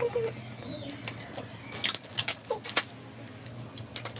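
Paper being handled and masking tape pulled off its roll, giving a cluster of sharp crackles in the middle, over a steady low hum.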